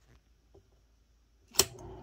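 Brother Correct-O-Ball XL-I electric typewriter being switched on: near silence, then a click of the power switch about one and a half seconds in, after which its motor starts a steady, quiet hum.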